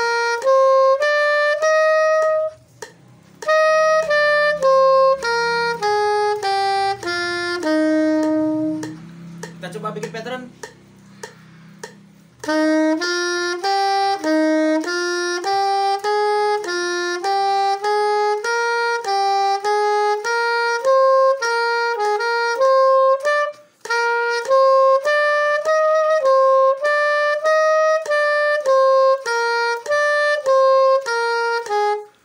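Straight soprano saxophone playing a practice run of short, evenly tongued notes, about two a second, stepping up and down a scale in Do = F. The playing breaks off briefly twice, with a longer pause of a few seconds near the first third.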